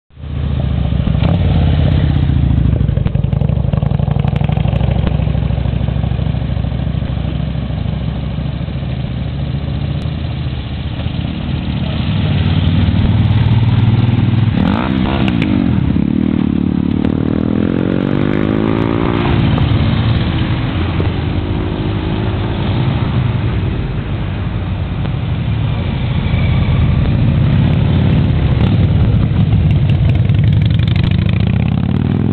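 A column of motorcycles riding past one after another, their engines running continuously and loudly with no gap between bikes. About halfway through, one engine's pitch glides noticeably as it passes close by.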